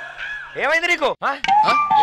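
A brief burst of a man's voice, then a sustained chime-like tone that starts about halfway through and slowly falls in pitch.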